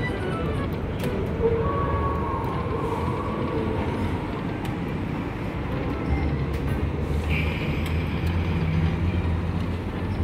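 Casino floor ambience: a steady low rumble of the gaming room with electronic slot-machine music and jingles, and a few small clicks.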